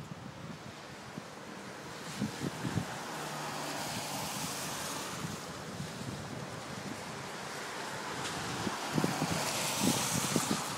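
Gusty storm wind, swelling and easing, with gusts buffeting the phone's microphone about two seconds in and again near the end.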